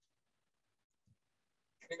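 Near silence: room tone during a pause in speech.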